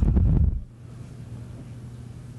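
A brief low rumble on the podium microphone in the first half-second, like a puff of breath or a bump on the mic, followed by a steady low electrical hum and room tone.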